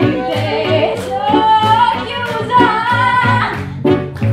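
A woman singing lead into a microphone with a live band, electric guitar among them, over a steady beat.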